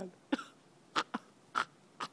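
A man's short, breathy vocal sounds, not words: four brief bursts within about a second and a half, with near quiet between them.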